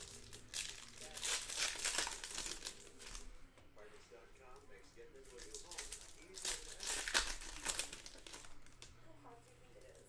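Foil trading-card packs crinkling as they are flipped through and sorted by hand, in two bouts: about half a second in and again around six seconds in.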